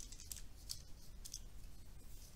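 Faint, scattered soft ticks, three or four over two seconds, above a low steady background hum.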